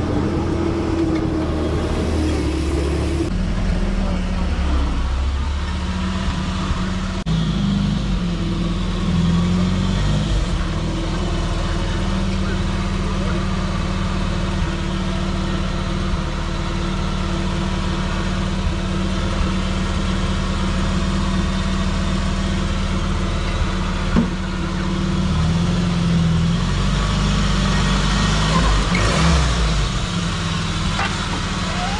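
Mahindra CJ3B jeep's engine running as the jeep drives slowly, its pitch rising and falling a few times with the throttle. The engine note changes abruptly about three seconds in.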